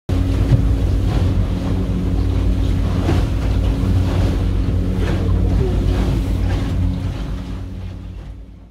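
A motorboat's engine running steadily under way, with water rushing and splashing against the hull, heard from inside the cabin; it fades out near the end.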